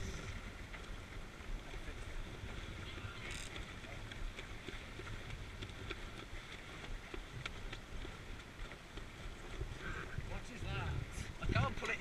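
Wind buffeting the microphone over the steady wash of water along the hull of a Scorpion sailing dinghy under way.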